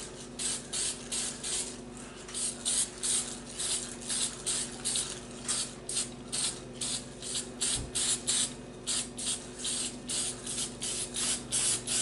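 Aerosol spray-paint can hissing in short repeated bursts, about two or three a second, as black paint is sprayed on. Its tip is partly clogged and spits drops.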